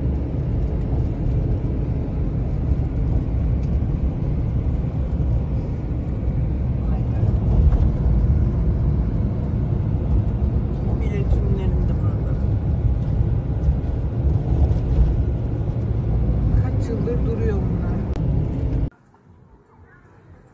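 Steady low rumble of a car driving, heard from inside the moving car on a phone microphone, with faint voices now and then. The rumble cuts off suddenly near the end.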